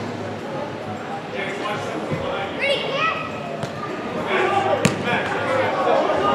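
A soccer ball struck hard once, a sharp thump about five seconds in, with a fainter knock shortly before, in a large indoor hall over the voices of players and spectators.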